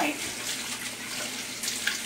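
Kitchen faucet running steadily as hands are rinsed under the stream of water.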